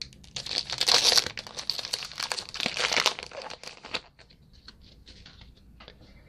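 Plastic wrapper of a baseball card pack being torn open and crinkled: a dense crackle for about four seconds that then dies down to faint rustling.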